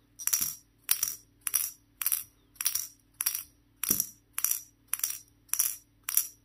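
Metal ball of a Simboll dexterity puzzle rattling and bouncing on the puzzle's polished metal cone as the puzzle is lifted again and again. There are about ten short, bright, ringing clatters, evenly spaced a bit under two a second.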